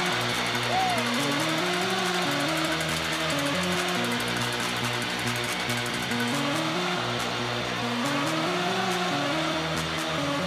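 Arena goal song playing over crowd noise after a home-team goal, its melody stepping through a run of notes.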